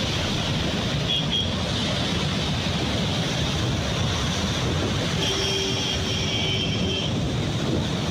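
Floodwater rushing through the open crest gates of a dam spillway: a loud, steady rushing noise. A faint high tone shows briefly about a second in and again for a couple of seconds past the middle.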